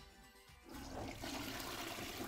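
Toilet flushing: water rushing and gurgling down the bowl, starting about two-thirds of a second in and running on steadily.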